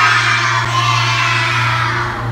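A group of children chanting a cheer together in unison, many voices at once, over a steady low hum.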